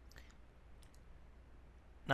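Near silence: room tone with a steady low hum and two faint clicks, one just after the start and one just before the middle.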